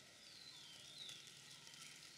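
Near silence: a pause with faint background hiss, and two faint high falling chirps about half a second to a second in.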